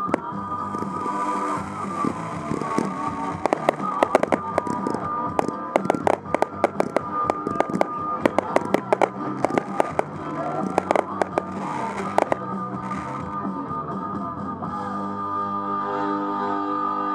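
Aerial fireworks going off over music. Sharp reports come thick and fast from about three seconds in until about twelve seconds in, after which only the music carries on.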